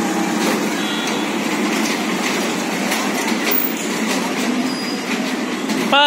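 Steady rumbling and rattling of a turning kiddie carousel platform of ride-on toy jeeps.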